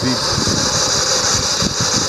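Steady low rumbling noise under a constant hiss, with no words.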